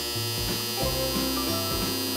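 A steady electronic buzzer tone, thin and buzzy, sounding over background music whose low notes step through a tune.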